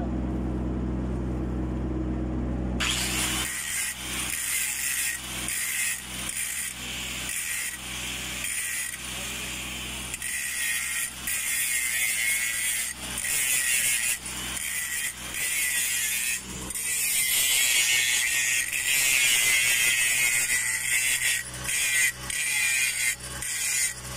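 Angle grinder with an abrasive disc grinding down a weld joint on a large-diameter steel pipe. The loud, harsh grinding starts suddenly about three seconds in, after a steady low hum, and runs with brief breaks as the disc is lifted and set back. It is loudest in the second half.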